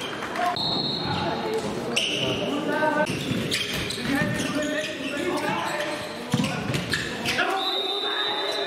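Handball game on an indoor court: the ball bounces and strikes the floor, shoes squeak on the court, and players' voices ring out in the echoing hall.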